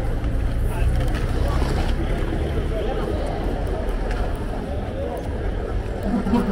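Busy street ambience: many people talking in the crowd around, over a steady low rumble of traffic.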